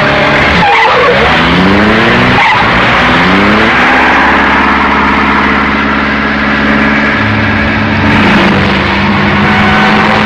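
A car engine revving up twice in quick succession, with tyres skidding, then running on in a long steady drone.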